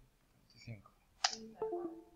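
A single sharp computer click about a second in, as a grade weight is entered and saved in a web form. Faint voice sounds with a few held pitches come around it.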